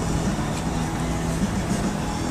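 Car running, a steady low rumble heard from inside the cabin.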